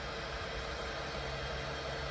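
A 400 W brushless electric motor with its reduction gearbox running steadily on throttle: an even whirr with a faint low hum.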